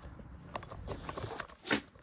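Faint handling noise: a few short crunches and clicks, with a louder click near the end.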